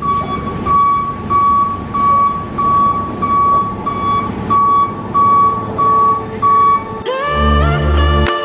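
Flatbed tow truck's reversing alarm beeping steadily at one pitch, about two beeps a second, over the truck's engine as it backs up. The beeping stops about seven seconds in and music with a heavy bass starts.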